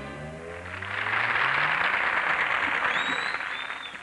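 A salsa band's last held chord dies away, then a studio audience applauds for about three seconds, fading out near the end.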